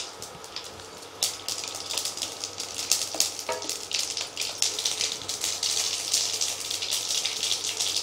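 Mustard seeds spluttering in hot oil in an aluminium kadai as the tempering takes: quiet for about a second, then a quick, dense crackle of popping seeds over a sizzle, growing busier toward the end.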